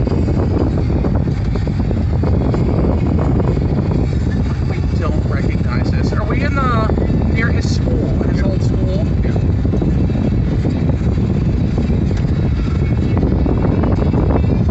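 Steady low rumble of road and engine noise inside a moving car's cabin. A faint voice-like sound rises above it about halfway through.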